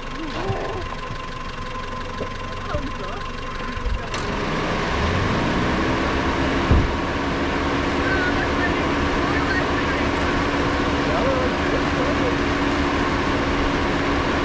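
A small engine or motor starts with a click about four seconds in. Its pitch rises, then holds at a steady run.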